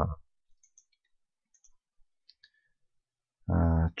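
A few faint computer mouse clicks, scattered over about two seconds, as a new query is opened in Microsoft Access.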